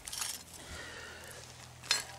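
Quiet background with one short, sharp click near the end.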